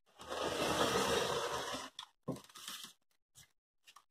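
Rotary cutter slicing along a ruler edge through pieced cotton fabric on a cutting mat: one continuous cut of nearly two seconds, then a few short scraping strokes.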